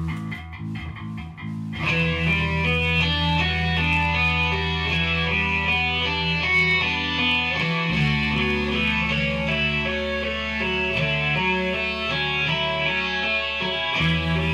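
A rock band recording with guitars and bass playing; a sparse opening gives way to the full band about two seconds in, which then plays on steadily.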